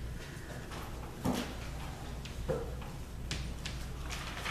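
Chalk writing on a chalkboard: short sharp taps and scratches of the chalk stick as letters are formed, starting about three seconds in, after a couple of isolated soft knocks.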